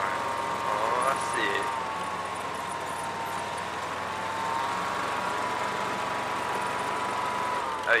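Six-wheeled Gator utility vehicle driving over snow: its engine and drivetrain make a steady whine whose pitch sags a little partway through and then picks back up.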